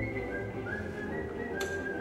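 A whistled melody of short held notes stepping up and down, over soft accompanying music, played back over a hall's loudspeakers.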